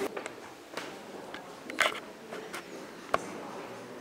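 A few small, sharp clicks and knocks over faint room hiss in a quiet room, the loudest nearly two seconds in and a sharp one just after three seconds.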